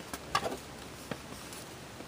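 Stiff cardstock being handled and creased by hand as a folded paper card is made: a few light crinkles and taps, the loudest cluster about half a second in, over a quiet room.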